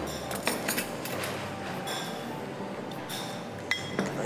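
A metal spoon clinking lightly against ceramic coffee cups several times, the sharpest clink near the end.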